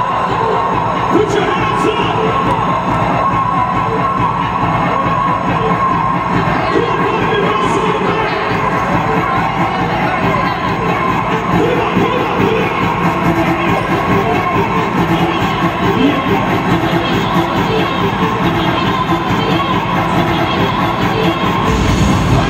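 A large crowd cheering and shouting steadily, with live dance music from the DJ set playing underneath.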